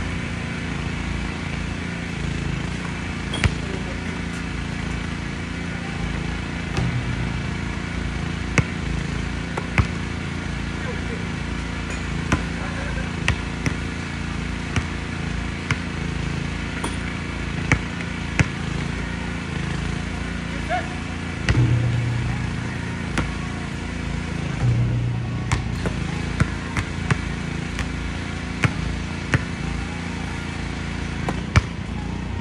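Basketballs bouncing on an outdoor hard court: short, sharp thuds at irregular intervals, a few seconds apart, over steady background noise.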